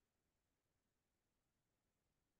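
Near silence: only a very faint, steady noise floor.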